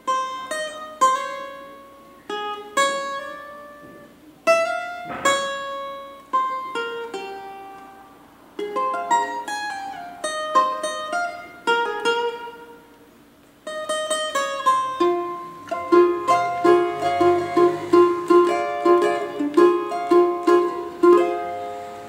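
Cavaquinho playing a single-note solo in F minor slowly, each note plucked and left to ring. There is a brief pause a little past the middle, and near the end a quicker passage of rapidly repeated, alternating notes.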